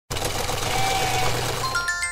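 Intro sound effect: a dense, steady whirring rattle that starts abruptly, then a quick rising run of short bell-like chime notes near the end.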